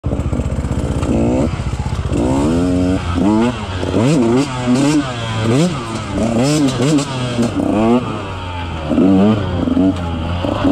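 KTM 150 XC-W two-stroke single-cylinder engine ticking over with a steady beat, then revving up and down repeatedly as the bike is ridden along a dirt trail, its pitch rising and falling once or twice a second.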